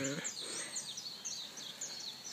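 Small birds chirping: many short, high, falling chirps, about four or five a second, over faint background.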